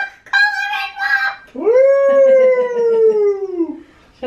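A child's high wordless calls, ending in one long howl-like call that slowly falls in pitch.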